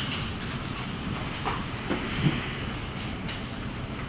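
Steady low rumble and hiss of a courtroom's room tone, with a few faint, brief sounds around the middle.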